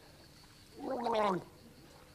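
A man's single short, strained vocal croak that wavers and falls in pitch, a comic gasping reaction just after downing a swig of tequila.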